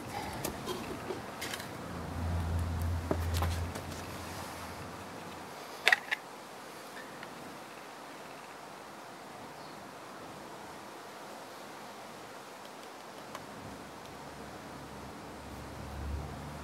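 Light handling sounds of wood and a knife: a few scattered clicks and taps, the sharpest about six seconds in, with a brief low rumble a little before it. After that only a quiet steady hiss is left.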